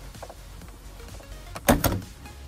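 A plastic retaining clip on the air-intake duct snapping loose near the end, one short sharp clack.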